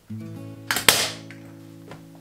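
A staple gun fires once with a sharp snap just under a second in, driving a staple into the padded chair arm where there is no wood behind it to hold it. Background music plays throughout.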